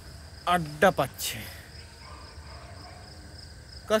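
Crickets chirping steadily, with a man's voice calling out once briefly about half a second in.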